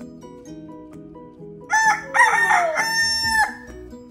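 A rooster crowing once, a long cock-a-doodle-doo starting a little before halfway through, over soft music.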